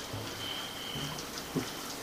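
Quiet room tone in a pause between speech: a faint hiss with a thin, steady high-pitched tone and one soft knock about one and a half seconds in.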